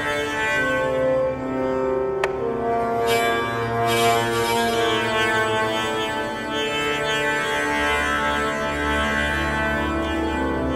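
Strings of an electromagnetically prepared double bass, set vibrating by electromagnets that are fed a square wave from a keyboard, giving sustained droning notes that shift pitch, with its sympathetic strings ringing along.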